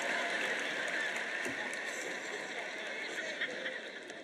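Audience in a large hall laughing, the laughter slowly dying down.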